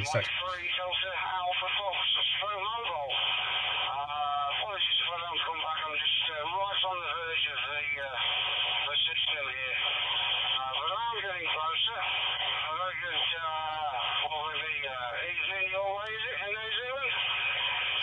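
Another operator's voice received over DMR digital radio through a DV4 Mini hotspot, played from the small speaker of a Hytera SM27W1 Bluetooth speaker microphone: continuous talk with a narrow, thin radio sound.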